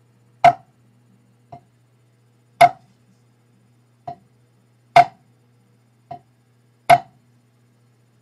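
Slow drumstick strokes on a practice pad, alternating loud and soft: four loud down strokes about two seconds apart, with a soft tap between each pair. This is the tap-then-down-stroke pattern of the up-and-down wrist motion.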